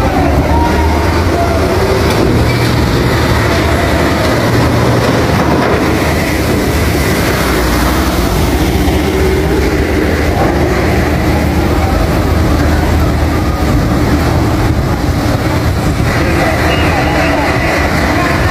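A steady low engine rumble from a docked ferry under a loud, continuous rushing noise of stormy wind and weather, with people's voices at the start and again near the end.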